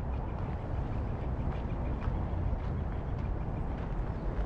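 Steady low outdoor rumble of wind on the microphone and distant city traffic, with faint scattered ticks.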